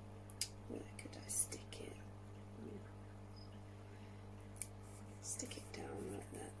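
A few small clicks and taps from handling plastic pots, over a steady low hum, with faint murmuring in places.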